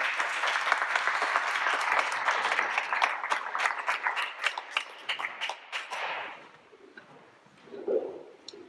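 Audience applause: many hands clapping together, dying away about six seconds in.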